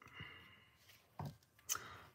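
Faint sounds of small vellum and cardstock pieces being handled and pressed onto a card: light rustles, with a short sharp sound shortly before the end.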